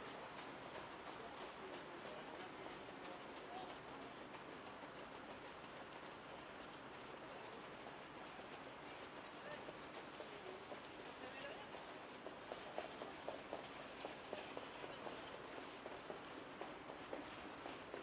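Faint open-air ambience at a trotting track, with distant voices. From about two-thirds of the way in comes a run of faint hoofbeats from trotters on the track.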